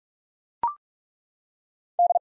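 A brief two-note electronic courtesy tone, a short beep stepping up from a lower pitch to a higher one, about half a second in. It marks the end of one word's round in a Morse code practice recording; the rest is silence.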